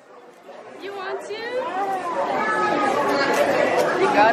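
Indistinct talk and chatter of several voices. It starts faint after a sudden cut and builds to steady conversation within about two seconds.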